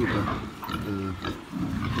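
Pigs grunting a few times, short low calls with the strongest about a second in.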